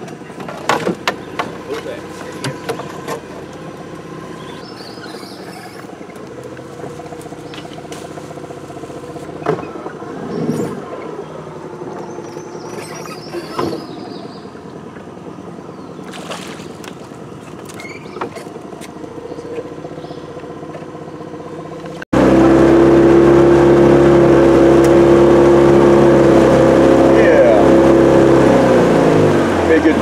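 Boat's outboard motor running low under scattered clicks and knocks from handling gear in an aluminium jon boat; after an abrupt cut about two-thirds through, the outboard runs loud and steady under way, its pitch dropping as it throttles down near the end.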